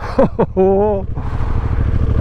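Honda CRF1000L Africa Twin's parallel-twin engine running steadily at low revs, a continuous low rumble, while the rider lets out short wordless exclamations and a held vocal sound about half a second in.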